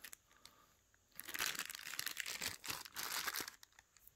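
Thin clear plastic bags crinkling as they are handled. The bags hold bicycle hub parts. The crinkling starts about a second in and stops shortly before the end.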